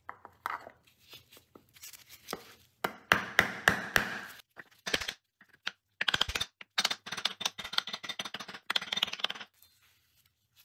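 Repeated sharp knocks as a new wheel speed sensor is tapped down into a rear hub bearing assembly through a wooden block, seating it flush against the hub. A few scattered taps come first, then a quick run about three seconds in, then a long fast run of knocks from about six seconds in until shortly before the end.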